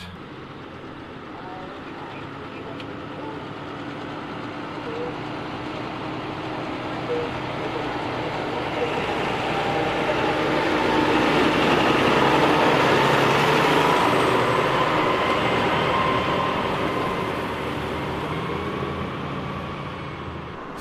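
New Holland T7.230 tractor pulling a high-sided trailer across a field, driving past. The engine and trailer noise grow steadily louder as it approaches, peak just after halfway, and fade as it drives away.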